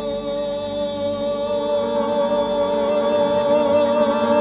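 Live music from a small acoustic ensemble of piano, cello, bouzouki, guitar and double bass: a slow passage of long held notes that swells gradually louder.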